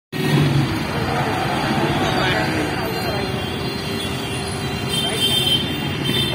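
Busy street traffic at a junction: car engines and tyres passing close by in a steady wash of traffic noise, with voices in the background.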